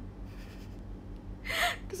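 A woman's short, sharp in-breath, like a gasp, near the end of a pause in her talk, over a faint steady low hum.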